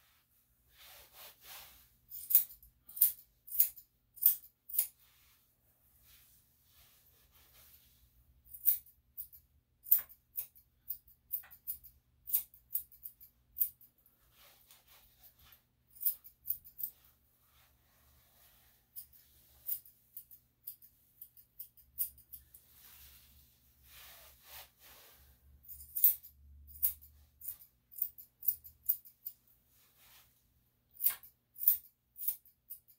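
Steel grooming scissors snipping through a Morkie's coat around the ears: sharp snips coming in irregular quick runs with short pauses between. A couple of brief soft rustles of hair or handling come in between the snips.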